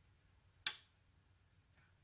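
A single sharp click from the Sonoff 4CH Pro relay board as channel 3 is switched on in interlock mode, which knocks channel 1 off.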